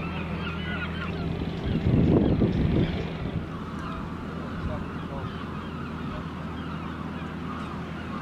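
Birds calling over a steady low engine hum, the calls loudest about two seconds in.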